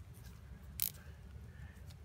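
Faint steady background noise, with one short rasp a little under a second in: a plastic zip tie being pulled tight around crossed wooden chopsticks.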